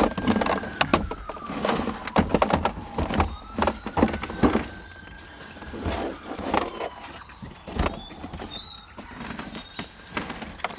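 Late-2000s Chevrolet Impala's plastic center console being handled and set back in place over the shifter: irregular knocks, clicks and scrapes of hard plastic trim, busiest in the first half.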